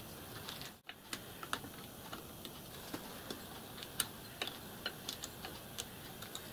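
Irregular light metallic clicks and taps as small parts are handled and fitted on a steel tender chassis, over a steady background hiss, with a brief dropout a little under a second in.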